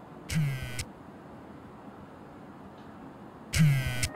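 A smartphone vibrating against a hard marble tabletop: two short buzzing rattles about three seconds apart, each dropping slightly in pitch as it stops. These are the buzzes of an incoming call or message lighting up the phone.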